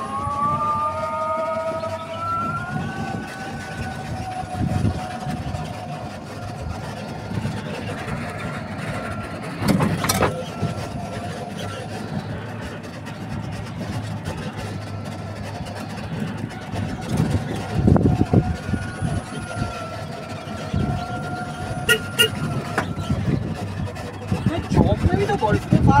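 Outdoor ambience dominated by a vehicle's drawn-out pitched tone that slides slowly upward over the first few seconds and returns about two-thirds of the way through, with brief voices now and then.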